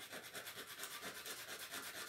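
A lithium tablet being rubbed back and forth on sandpaper in quick, even strokes, a faint rhythmic scratching as the pill is ground down to a lower weight.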